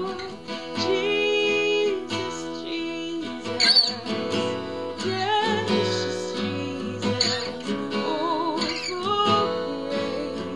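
Acoustic guitar strummed, with a woman singing over it in a song.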